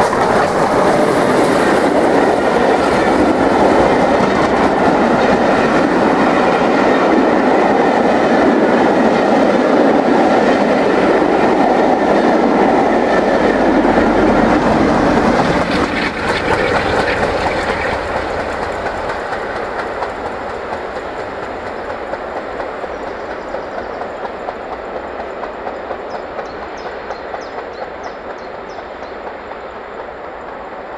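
Steam-hauled passenger train passing close by at speed, its coaches clattering over the rail joints. The noise is loud and steady for about sixteen seconds while the coaches go by, then drops and fades as the train draws away.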